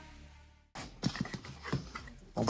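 Background music fading out, then after a brief silent break a few short scrapes and taps of a cardboard box being opened by hand, its flap pulled back.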